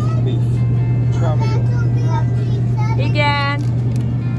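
A loud, steady low hum, like the refrigeration of a supermarket display cooler, with voices talking and some music over it.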